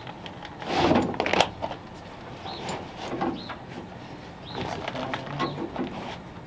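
Heavy textured rubber floor mat being shifted and pressed down onto a car floor, with a louder scuffing flop about a second in. A bird chirps in the background, short high chirps every second or so.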